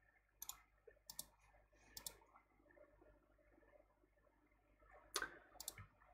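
Faint computer mouse clicks, several in quick pairs like double-clicks, in the first two seconds and again near the end, with near silence between.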